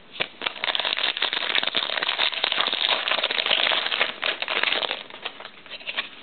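Foil trading-card pack wrapper crinkling as it is torn open: a dense run of small crackles that dies down about five seconds in.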